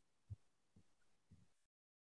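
Near silence on a video call, broken by three faint, short, low thuds.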